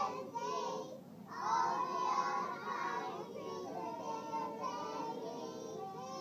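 A group of about a dozen three-year-olds singing together in unison, with a brief pause about a second in before they carry on.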